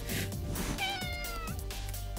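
A Siamese cat meowing once, a single call of under a second that falls slightly in pitch, over background music with a steady beat.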